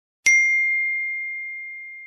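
A single bright chime sound effect that accompanies the channel logo: one clear ding struck about a quarter second in, ringing on a single high tone and fading steadily.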